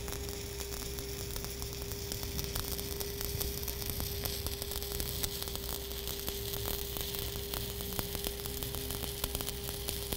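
Stick-welding arc on pipe, a 7018 electrode burning at 85 amps, crackling steadily and evenly as the bead is run up the pipe. A steady hum runs under the crackle.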